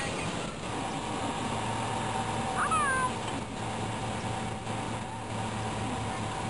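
Camcorder location sound of an outdoor scene with an SUV starting to play: steady background noise with a low hum and faint steady tones, and one short falling cry about two and a half seconds in.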